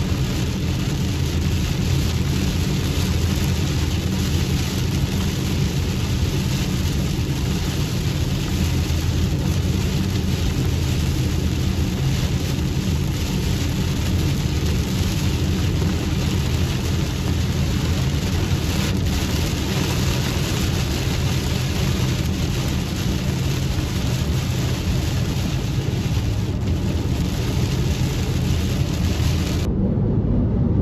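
A car driving through heavy rain, heard from inside the cabin: rain on the windshield and roof over the steady low rumble of engine and road. The rain noise stops abruptly at the very end.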